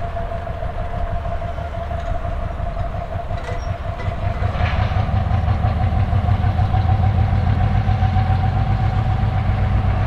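Soviet 2TE10L twin-section diesel locomotive's two-stroke opposed-piston engines running as it moves slowly forward, a low rumble with a steady high whine over it. About halfway through the rumble grows louder as the engine is worked harder and throws out smoke.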